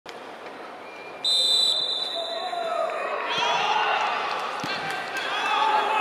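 Referee's whistle blown once for kick-off, a short shrill blast about a second in. After it come players' shouts and a couple of thuds of the football being kicked.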